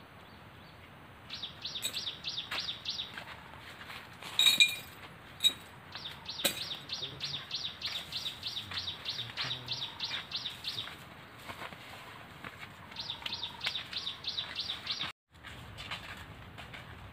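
A bird calling in runs of quick, high repeated notes, about four a second. Each run lasts a few seconds, with a few louder, sharp chirps near the middle.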